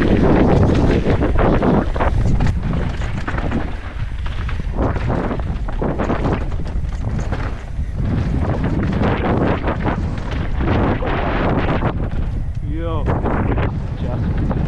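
Wind buffeting a helmet-mounted action camera's microphone as a mountain bike descends a dirt trail at speed, with tyre noise and frequent knocks and rattles from the bike over bumps. A brief wavering tone sounds near the end.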